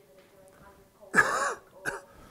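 A man clearing his throat with a cough into his fist: one loud rasp a little over a second in, then a short second one just before the end.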